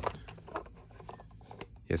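Faint clicks and light scraping from a toy Mack hauler truck trailer being handled and turned over in the hands.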